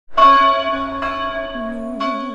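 A church bell struck and ringing out, its tones slowly fading, struck again more faintly about a second in.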